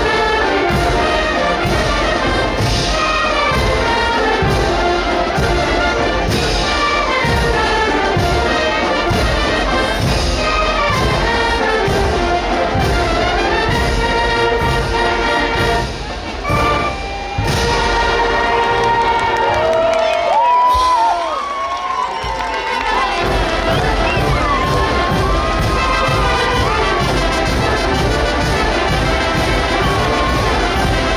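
A large Oaxacan brass wind band plays dance music with trumpets and trombones over a steady beat, with a short break about halfway through. Crowd whoops and cheers rise over the music a few seconds after the break.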